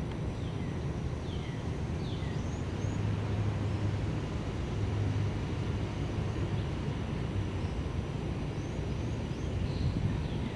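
Steady low outdoor rumble of distant traffic or engine noise, swelling a little a few seconds in, with several short bird chirps near the start and again near the end.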